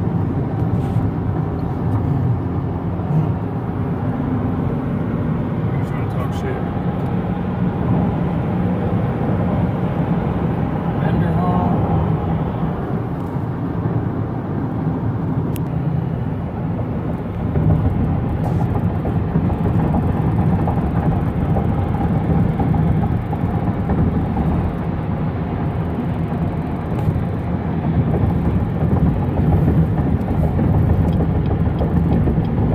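Steady road and wind noise inside a car cabin at freeway speed: a low rumble from the tyres on the road.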